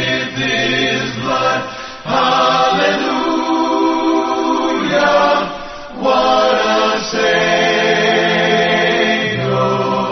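Choir singing a slow hymn in long held chords, phrase by phrase, with short breaks between the phrases.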